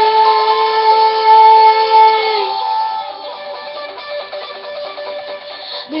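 A woman's voice holding a long sung note over a backing track, ending about two and a half seconds in; then the backing track's instrumental break, with guitar, plays on alone until the singing resumes at the very end.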